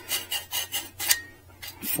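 Short rasping strokes of paint being shaved off a metal mounting part of an e-bike's rear shock, about six strokes at an uneven pace. The paint is being removed because it makes the shock's pivot bind.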